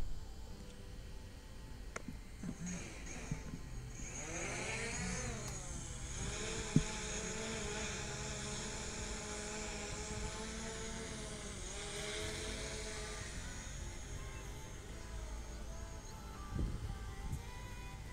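DJI Mavic Pro quadcopter motors and propellers spinning up about four seconds in, with a rising whine as it lifts off. It then keeps up a steady buzzing whine that dips slightly in pitch now and then as it hovers and climbs. A single sharp click comes about seven seconds in.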